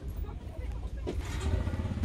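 Indistinct background voices over a steady low rumble, a little louder near the end.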